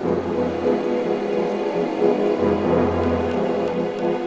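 Background film-score music: sustained synthesizer chords over a low bass note that sounds, drops out and returns, with the chords shifting about every second.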